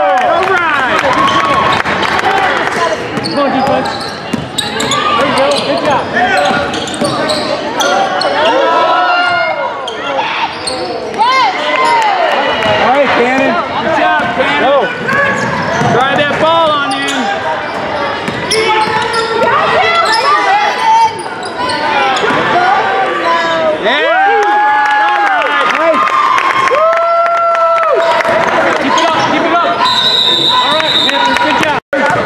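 Basketball dribbled on a hardwood gym floor during play, with voices calling out over it, in a large gym.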